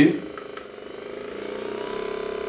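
Pulseroll percussive massage gun running on its second of four speed settings: a steady motor hum with a fast, even pulsing from the striking head, growing a little louder over the first second.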